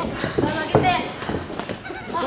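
Light knocks and thuds of two boxers sparring in a ring, scattered through the moment, with a short gliding voice about three-quarters of a second in.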